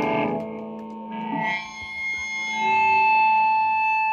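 Electric guitar played through a distorted amp: a chord rings out and fades just as it opens, a short strum follows about a second in, and sustained notes come back a little past halfway, over a steady ringing tone.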